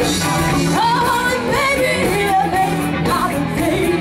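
Live rock band playing, with a woman singing lead over electric guitars and a steady bass line.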